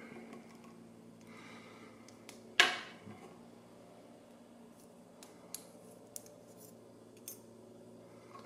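Small metal clicks from a pin-tumbler lock and the tools taking it apart: one sharp click about two and a half seconds in, then a few lighter ticks, over a steady low hum.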